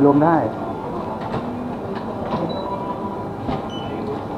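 Shop checkout sounds: goods and plastic bags being handled at the counter over a steady store hum, with a few short, high electronic beeps from the barcode scanner during the second half.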